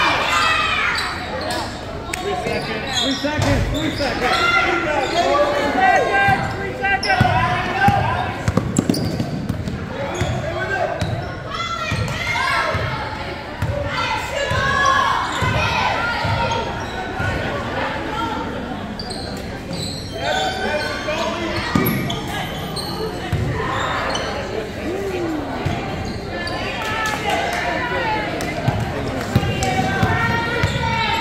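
A basketball bouncing on a hardwood gym floor during play, with voices calling out across the court, echoing in a large hall.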